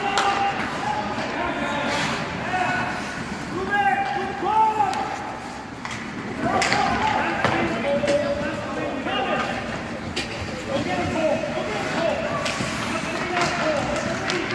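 Live sound of a youth ice hockey game in an indoor rink: voices shouting and calling out on and around the ice, with sharp clacks of sticks and puck and occasional thuds off the boards.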